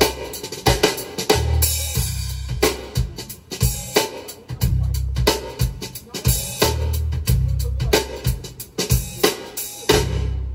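A drum-kit recording played back through a pair of Jamo 707 floor-standing loudspeakers: busy snare, cymbal and tom strikes over deep bass-drum hits that swell every second or two.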